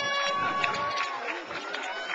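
Air horn blowing one long steady blast that cuts off just over a second in, sounded by the audience in celebration as a graduate's name is called, over crowd chatter.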